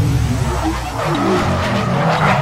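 Sound effect of a car tyre screeching in a burnout, over a deep low rumble; the screech grows stronger about a second in.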